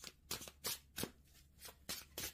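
A deck of oracle cards being shuffled by hand: a quick run of short, crisp card flicks, about six in two seconds.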